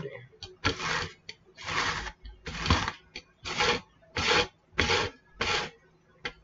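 Hand-held herb grinder being twisted back and forth in rasping strokes, about one a second, as cannabis is ground to pack a bowl.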